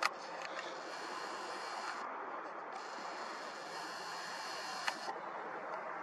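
Handling clicks from a Nikon Coolpix P1000 superzoom camera: one sharp click at the start and a smaller one about five seconds in, over a steady low hiss.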